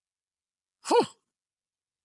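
A man's short breathy "whew" about a second in, one exhale whose pitch rises and falls. He is out of breath from the physical effort just spent.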